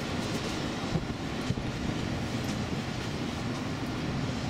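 Steady city background noise, a continuous rumble and hiss typical of urban traffic, with two brief knocks about a second and a second and a half in.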